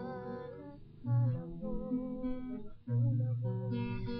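Acoustic guitar strummed, with fresh chords struck about a second in and again near three seconds, under a held, slightly wavering singing voice.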